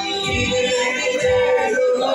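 Church choir singing a worship song into microphones, several male and female voices together over music with a low beat about once a second.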